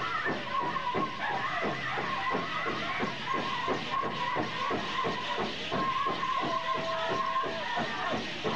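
Powwow drum group performing a Grand Entry song: a big drum struck in a steady beat, about three to four strokes a second, under high, held singing voices.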